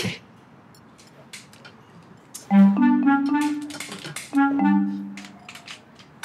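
A mobile phone ringtone: a short clarinet-like melodic phrase, a low note stepping up to a held higher note, played twice.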